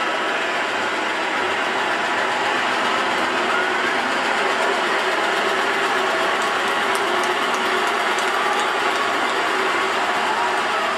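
Articulated lorry hauling a fairground trailer down a hill and passing close at low speed: a steady diesel engine and running-gear noise. A few faint high-pitched clicks come in the second half.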